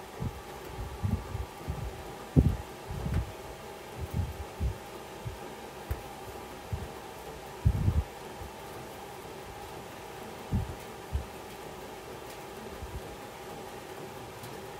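Irregular dull low thuds and rumbles as a composite baseball bat is rolled by hand back and forth between the rollers of a bat-rolling press, over a steady background hum.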